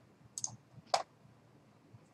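Two sharp clicks about half a second apart, the second louder: a computer mouse clicking.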